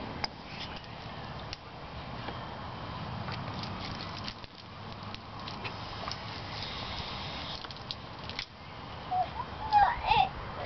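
Garden hose running, its water splashing onto potted cacti and paving: a steady hiss with small scattered clicks and drips.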